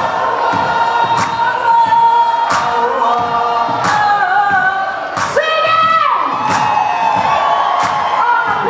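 Live band and singer heard from amid a cheering concert crowd: long held sung notes, one sliding down in pitch about five and a half seconds in, over irregular sharp hits and crowd noise.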